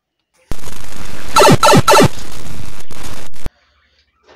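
A very loud, harshly distorted sound clip, cut in abruptly for about three seconds. It holds three short falling laughs over a crackling noise, and it cuts off suddenly.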